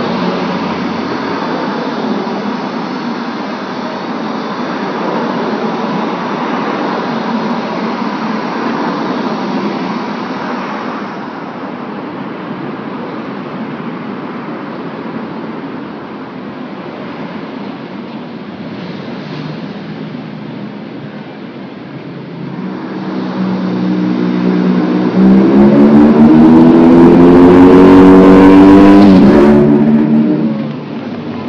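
Street traffic noise, then in the last third a road vehicle's engine revving up close by, its pitch rising, the loudest sound here, before it cuts off near the end.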